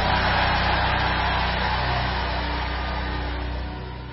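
Congregation shouting and roaring in response to a prayer, over a sustained low keyboard chord; the noise dies away slowly and drops off shortly before the end.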